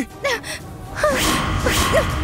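A woman crying: short gasping sobs that fall in pitch, near the start and again from about a second in, with a swell of background music rising under them.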